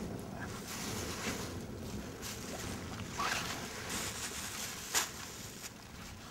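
Wind buffeting the microphone, with rustling and handling noise as a bag is rummaged through, and a sharp click about five seconds in.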